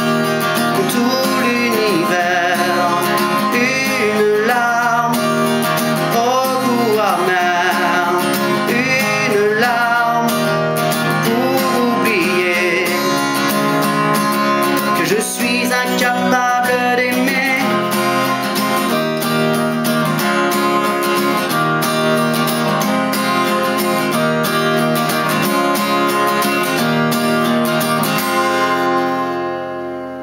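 Acoustic guitar strummed steadily, with a voice singing a melody over it through roughly the first half. The strumming carries on alone and fades out near the end.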